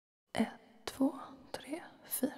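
A voice whispering four short words at an even pace, about half a second apart, like a count-in to the song's tempo.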